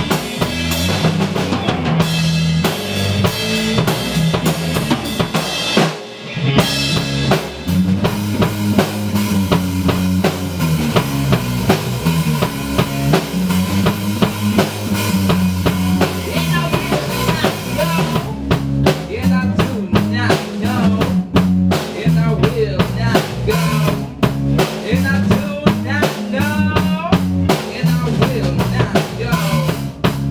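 A rock band playing live in a rehearsal room: drum kit and guitar, with a brief drop in the sound about six seconds in. A male voice starts singing into a microphone a little past the halfway point.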